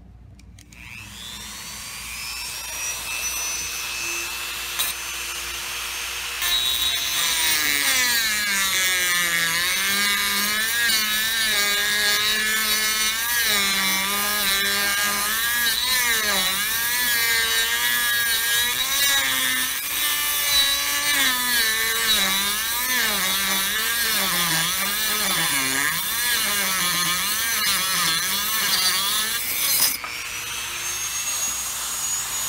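A Dremel rotary tool spins up with a rising whine, then about six seconds in starts grinding through the neck of a thick-walled glass bottle. The motor's pitch dips and wavers repeatedly under the load of the cut.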